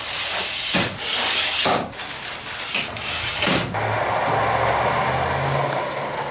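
Sliding side window of an Ikarus bus pushed along its track twice, each stroke a scraping hiss about a second and a half long; after that a quieter low steady hum.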